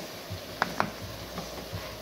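Light kitchen clatter: two sharp clicks in quick succession just over half a second in and a fainter tick later, over a low steady hiss.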